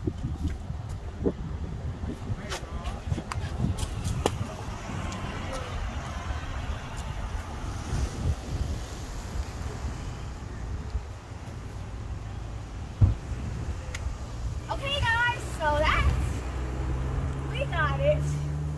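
Low rumble of wind on a phone microphone, with scattered knocks and scuffs as a child scrambles over a rock boulder, one louder knock partway through. A short burst of voice comes near the end.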